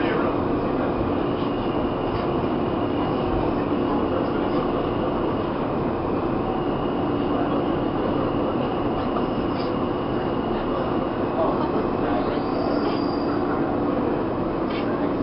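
NYC subway car running, a steady rumble with a low hum and a faint high whine.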